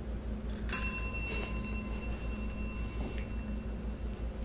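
Chrome desk call bell struck once by a cat, a single bright ding that rings on and fades away over about two seconds. The cat rings it as a trained signal to ask for a food reward.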